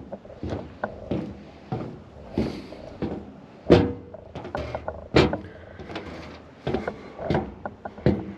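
Footsteps on a boat dock's decking: a run of irregular hollow knocks and thuds. The two loudest come a little past the middle, about a second and a half apart.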